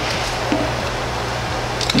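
Steady low hum with an even background hiss; no distinct clicks from handling the cube stand out.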